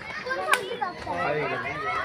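Mostly speech: several people's voices, children among them, talking and calling out over each other. A single sharp click about half a second in.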